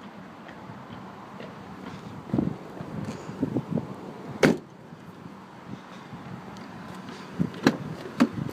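A sedan's trunk lid being shut: a few soft knocks, then one sharp slam about halfway through. Near the end come two sharp clicks as a rear door latch is released and the door opened.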